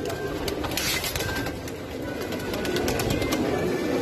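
A crowded loft of domestic pigeons cooing together, with scattered short clicks and a flutter of wings as a bird takes off near the end.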